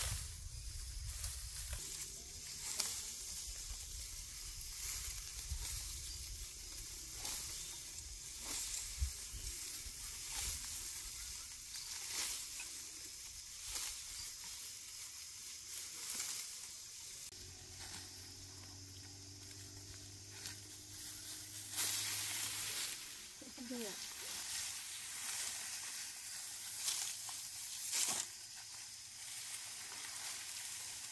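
Dry, ripe upland rice stalks and panicles rustling and crackling as they are harvested and bunched by hand, with frequent sharp crisp snaps over a steady hiss.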